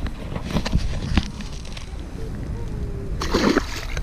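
A largemouth bass splashing into the pond as it is let go at the bank, one short splash near the end, after a few brief rustles and knocks. Wind rumbles on the microphone throughout.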